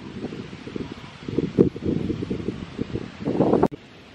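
Wind buffeting the microphone in uneven gusts, with some rustling; the sound cuts off suddenly near the end.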